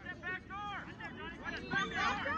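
Several voices shouting and calling out, overlapping in short high calls, with no words clear enough to make out.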